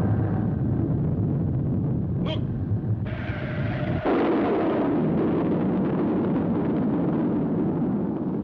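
Cartoon explosion sound effect. A low rumble swells into a louder blast about three to four seconds in, and the blast carries on as a long, noisy rumble.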